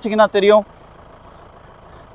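A man speaking for about the first half-second, then only a faint steady background hiss.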